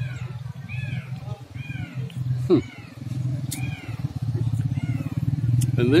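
A small animal calling repeatedly, about two short high arched calls a second, over a low engine drone that grows louder in the second half. A brief low hum comes about two and a half seconds in.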